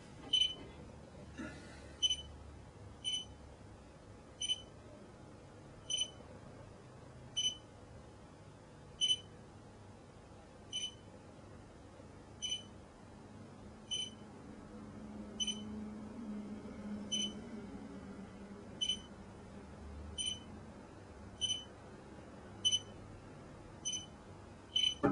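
Short, high-pitched electronic beeps repeat about once every second or so at slightly uneven spacing, signalling contact between the Bluetooth-scanning phone app and the remote device.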